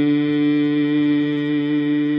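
A man's chanting voice holds one long, steady note, drawing out the raag name "Todi" at the opening of the Hukamnama recitation.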